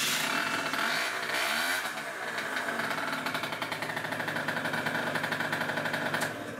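Gilera DNA 50cc two-stroke single-cylinder scooter engine running just after a warm start, on a newly fitted 80 main jet. The revs rise and fall briefly about a second or two in, then settle into a steady tickover of about a thousand rpm.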